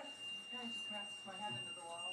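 A steady high-pitched tone held at one pitch, over quieter speech.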